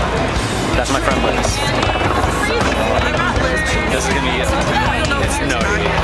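Several people talking at once close by, a steady babble of voices, with music playing under it.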